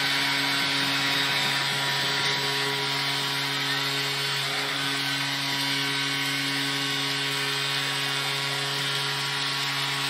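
Arena crowd cheering just after a home-team goal, with a steady low goal horn held throughout.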